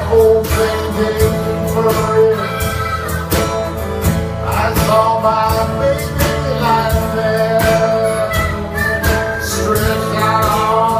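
Live band playing a minor-key blues: strummed acoustic guitars and an electric bass carry a steady groove under a held, bending lead melody line.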